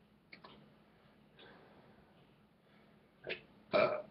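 A man burps twice in quick succession near the end, the second burp louder, after a few faint clicks.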